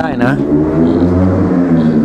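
Steady low drone of a running motor, its pitch wavering slightly, with a few words of a man's speech at the very start.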